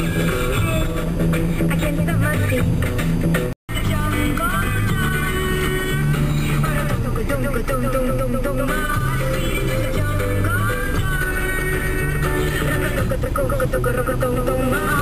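A song playing on the car radio, with music throughout; the sound drops out completely for a split second about three and a half seconds in.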